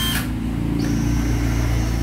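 National (Panasonic) EZ6403 cordless drill running under its trigger, a steady motor hum with a thin high whine joining about a second in.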